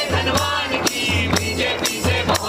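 Several male voices singing together live into a microphone, backed by a steady beat on a large hand-held drum and the jingle of a tambourine.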